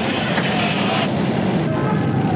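Steady, noisy din of a street riot, with indistinct voices in it.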